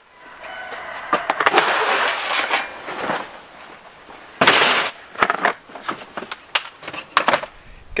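Plastic tubs and pots being handled on a work table, with rattling, knocking and scraping and a short rush of noise about four and a half seconds in.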